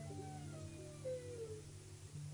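Faint meditation drone: several low notes held steady, with soft falling sliding tones drifting above them.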